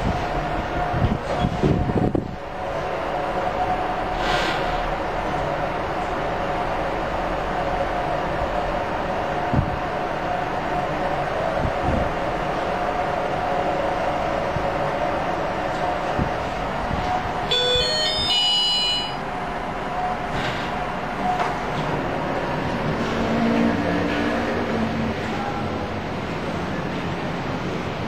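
Hyundai YZER machine-room-less passenger elevator riding up: a steady hum inside the moving car, with a short electronic chime about two-thirds of the way through as it reaches the floor.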